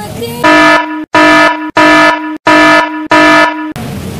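Air horn sound effect blasting five times in quick succession, each blast a steady, even-pitched tone about half a second long with short breaks between. It is far louder than the rest of the audio.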